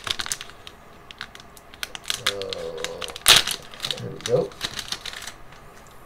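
Foil booster pack wrapper crinkling and crackling in quick, sharp crackles as the torn pack is worked open and the cards slid out, with one loud crackle about three seconds in.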